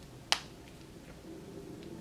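A single sharp snap about a third of a second in, from a small elastic hair tie being twisted around the end of a braid; otherwise faint room tone.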